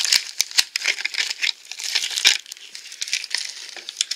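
Crinkling and rustling of clear plastic packaging being handled and pulled off a small hard plastic toy gift box, with many sharp clicks. Dense for the first two seconds or so, then sparser and quieter.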